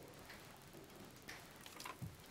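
Near silence: room tone in a quiet chamber, with a few faint ticks or taps.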